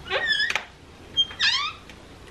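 Door hinges squeaking as an interior door is pushed open: a short squeak at the start, then a second squeak about a second later that falls in pitch.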